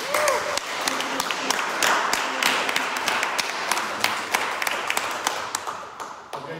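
Small audience applauding: a round of hand-clapping that ends near the end.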